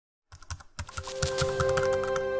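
Intro sound effect of rapid keyboard-typing clicks starting just after the opening, joined about a second in by a held, ringing musical chord.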